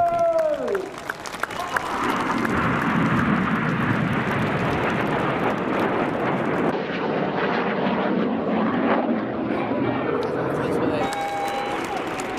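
Jet noise from Red Arrows BAE Hawk T1 jets, each powered by a single Adour turbofan, flying the display: a steady rushing noise. A shouted voice trails off, falling in pitch, in the first second.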